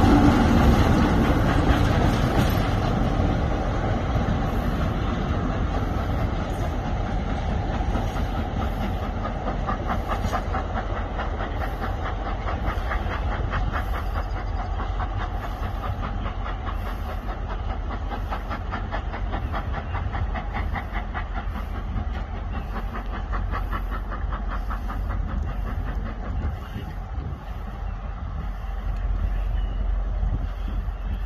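Passenger train pulling away and receding along the track, loudest at first and fading over the first few seconds. What remains is a steady low rumble with a fast run of rhythmic clicking from the wheels on the rails through the middle.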